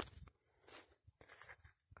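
Faint, irregular footsteps on soil and grass, after a sharp click at the very start.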